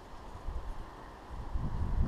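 Wind buffeting the camera microphone: a low rumble that swells in gusts, briefly about half a second in and more strongly near the end.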